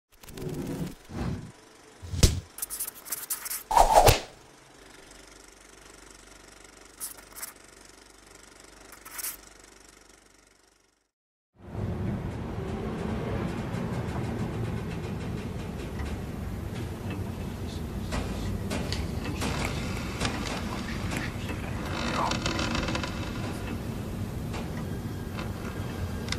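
An opening sting of sharp hits and swishes, loudest about four seconds in, with fainter hits trailing off. About a second of silence follows, then a steady low rumble of night-time room ambience with faint scrapes and rattles.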